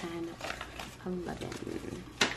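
Paper dollar bills flicked one by one as they are counted by hand, short crisp snaps and rustles, with a voice softly counting under its breath near the start and again about a second in.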